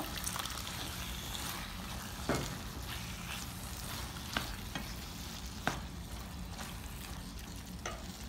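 Chicken and vegetables sizzling steadily in a frying pan just after a splash of water is added, being stirred with a spoon, with a few sharp knocks of the spoon against the pan.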